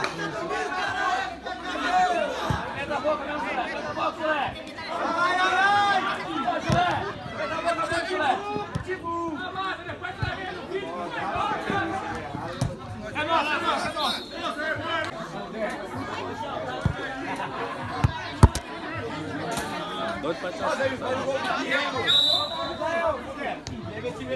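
Players and onlookers at an amateur football match shouting and chattering, with a few sharp thuds of the ball being kicked, the loudest about eighteen seconds in.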